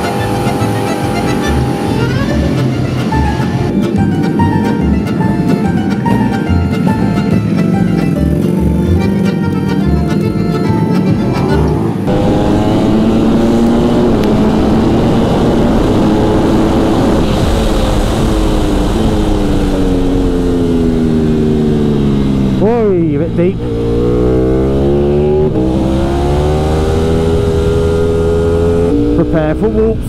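Music with a regular beat for about the first twelve seconds, then the onboard sound of a Ducati Panigale V4 Speciale's 1103 cc V4 engine at speed on track. Its pitch climbs steadily in a high gear, drops sharply a little over twenty seconds in as the rider brakes and changes down, then climbs again.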